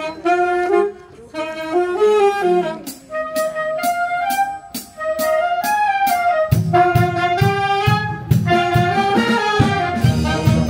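Wind band of saxophones, clarinets, flutes and brass with a sousaphone playing a melody. A steady ticking beat comes in about three seconds in, and a heavy low bass beat joins about six and a half seconds in.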